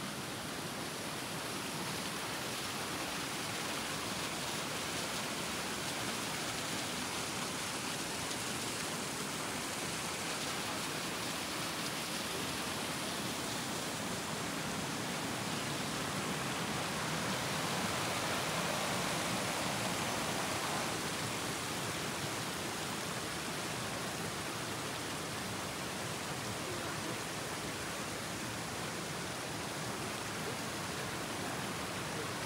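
Steady rushing of water from a forest stream and the wooden flume of an old watermill, an even wash of noise that grows a little louder for a few seconds past the middle.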